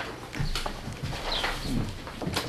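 Light rustling and scattered small knocks of papers and objects being handled on a meeting table.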